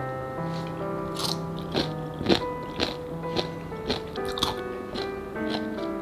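Crisp crunching and chewing of fresh napa cabbage kimchi (geotjeori), sharp crunches about twice a second with the loudest a little past two seconds in, over soft background music.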